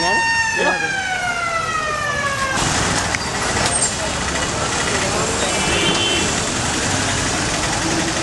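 Fire engine siren holding one steady note, then sliding down in pitch for about two seconds and cutting off. After it, the noise of vehicle engines and crowd voices in the street.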